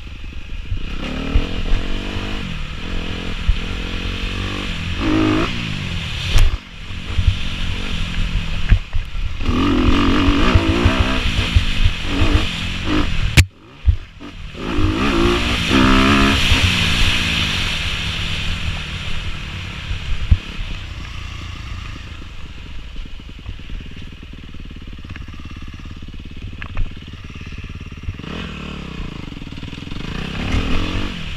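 Dirt bike engine revving up and down as it is ridden along a bumpy trail, its pitch climbing and falling again and again. About 13 seconds in there is a sharp knock and the engine sound drops away for a moment, then it picks up again.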